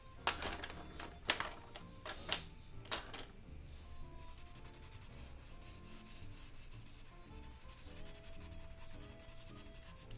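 Felt-tip marker scratching on drawing paper in a few short separate strokes over the first three seconds or so, then a faint steady rubbing hiss, under quiet background music.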